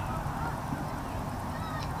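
Outdoor ambience of an open field: a steady low rumble with a few faint, short calls in the distance.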